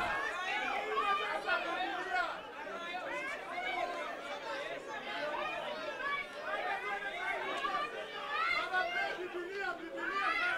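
Crowd of people chattering at once, many overlapping voices with no single speaker standing out.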